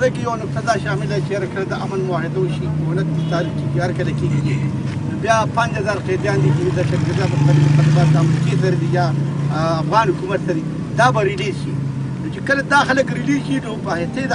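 A man's voice talking over a steady low hum, the hum swelling a little past the middle.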